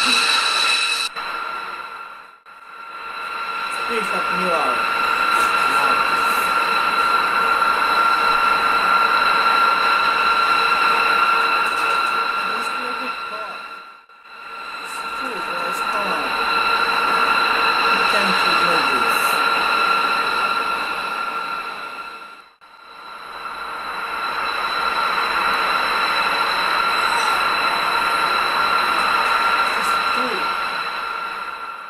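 B-2 Spirit bomber's turbofan engines running on the ground, a steady jet whine over a rush of noise. It dips away briefly three times and comes back.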